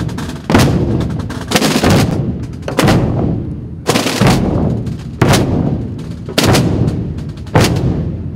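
A massed Semana Santa drum corps, many side drums played together, striking loud unison beats about once every 1.2 seconds. Each beat trails off in a dense rattle of sticks before the next.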